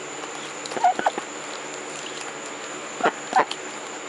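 Short bursts of a person's laughter: a pair about a second in and another pair near the end.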